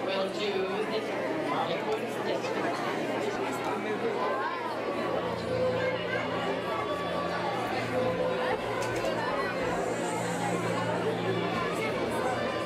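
Chatter of a crowd of children, many overlapping voices with no single speaker standing out, in a school hall.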